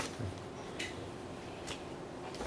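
A few small clicks and paper rustles over steady room hiss, from budget papers handled at a meeting table.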